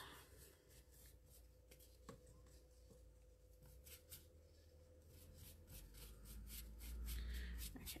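Faint soft strokes of a wet paintbrush brushed over rice paper and paper scraps on a journal page, smoothing them down. A low rumble builds underneath near the end.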